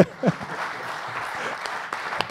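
An audience clapping steadily, a round of applause, after a brief laugh at the start.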